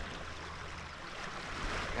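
Small lake waves washing steadily on a pebbly beach.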